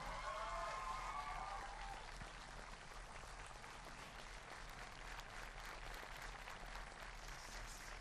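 Faint applause from a large crowd, a light steady patter of many hands clapping, with a short voice heard over it in the first two seconds.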